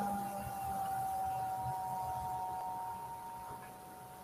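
A faint, steady electronic tone: two close pitches held together, slowly fading, over a low background rumble.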